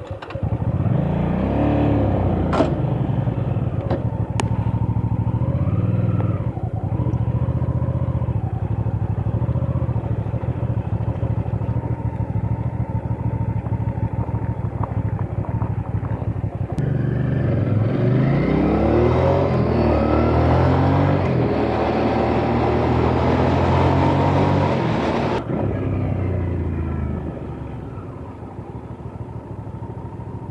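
Hyosung GV650's 647 cc V-twin engine pulling away and accelerating, its pitch rising, then running steadily. About two-thirds of the way through it accelerates again with a rising note, then eases off to a lower, quieter note near the end.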